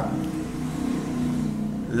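A motor vehicle's engine running, a low hum drifting slowly down in pitch.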